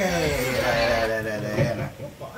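A person's long, drawn-out voice sliding down in pitch for about a second and a half, then breaking off.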